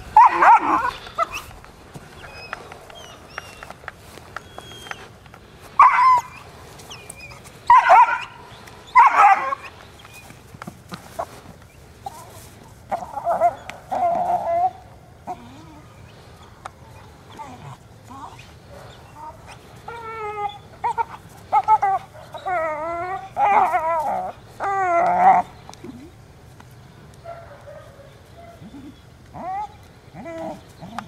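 German shepherd puppy barking in short, loud bursts, with a run of higher, wavering yips and whines about two-thirds of the way through.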